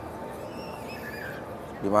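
Open-air background noise of a large lit plaza: a steady low hum with a few faint, wavering high calls in the middle.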